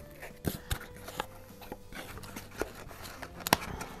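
Handling of a cardboard box and its packing: scattered light clicks and rustles, with one sharper tap a little before the end.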